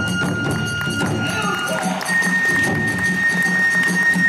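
Live kagura hayashi accompaniment: a flute holds long high notes, stepping up to a higher note about two seconds in, over a steady beat of drums and small hand cymbals.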